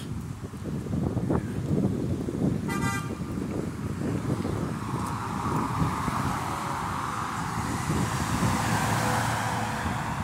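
City street traffic, with a short car-horn toot just under three seconds in. In the second half a vehicle passes close, its tyre and engine noise building.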